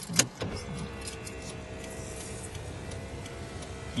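A sharp click, then a car's power window motor running for about three seconds with a steady whine.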